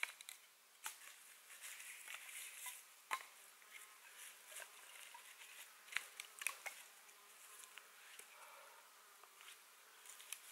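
Quiet knife work on dry kindling: a large blade scraping and shaving along thin sticks, with a few light, sharp knocks of the blade against the wood, the clearest about three seconds in and around six seconds in.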